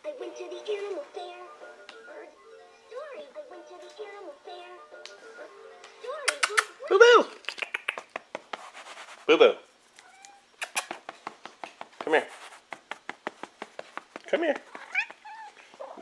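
An electronic children's picture book plays a sung tune for the first six seconds or so. Then a cat meows four or five times, a call every two to three seconds, among sharp clicks and rustling.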